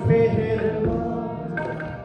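Sikh shabad kirtan: harmonium playing steady held chords with tabla strokes, and a voice chanting the hymn.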